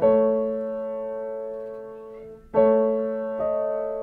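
Piano playing slow, sustained chords: a chord struck at the start rings and slowly fades, a new chord is struck about two and a half seconds in, and another note follows shortly before the end.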